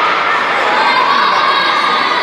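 Children shouting and cheering in a large indoor sports hall, a steady din of many voices.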